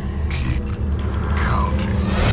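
Dark trailer music and sound design: a steady low drone under a few sharp hits, with a falling sweep about one and a half seconds in.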